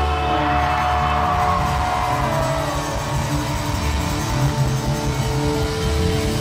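A live rock band playing an instrumental stretch, with electric guitars, bass and drums.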